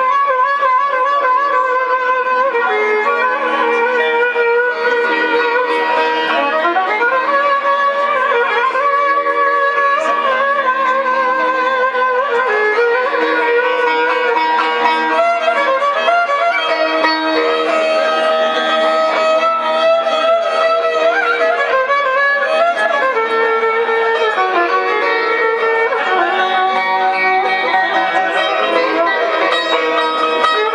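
Turkish folk tune (türkü) played on bağlama, with a violin carrying a wavering melody line that slides in pitch, over a steady droning accompaniment.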